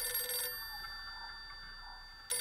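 A telephone ringing, the ring cutting off about half a second in and fading away.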